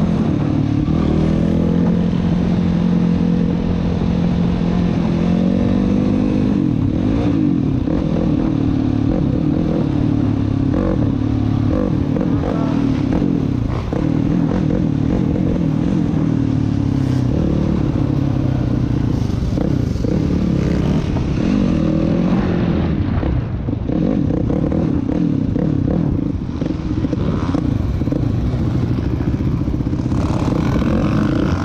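Quad (ATV) engine heard on board, riding at low speed, its pitch rising and falling with the throttle over the first few seconds and then running fairly steady.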